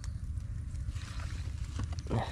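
Steady low rumble of wind on the microphone, with faint rustling and a few light clicks as a wire-mesh trap is handled in tall grass.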